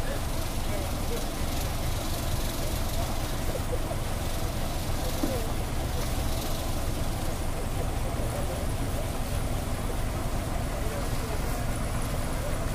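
A bus engine idling steadily, a low, even rumble, with indistinct voices of people around it.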